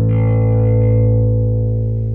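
A single sustained low electric bass note ringing through a Darkglass Alpha Omega drive pedal. It fades away as the pedal's blend knob is turned up with the drive at zero, so the blend only lowers the signal.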